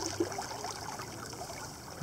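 Fast-flowing river water running and trickling steadily around bare feet dangled in the current.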